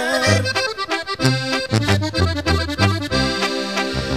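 Instrumental break in a norteño ranchera: an accordion plays the melody over a bouncing bass line, with no singing.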